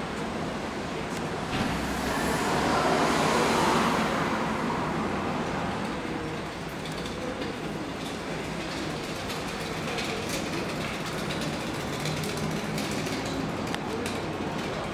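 Steady background noise with a low rumble, swelling louder about two to four seconds in; no piano notes are heard.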